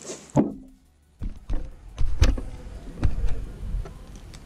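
Gloved hands handling a steel pushrod close to the microphone: rubbing and a low rumble from about a second in, with several sharp clicks.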